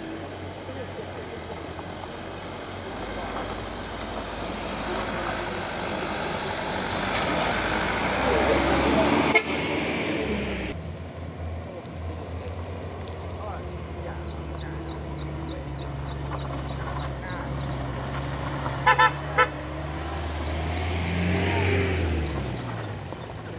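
Vehicle engines labouring up a steep dirt climb. A light truck's engine works hard and grows louder over the first half. After a sudden change, a minibus engine drones steadily, with two short horn toots about 19 seconds in, the loudest moments.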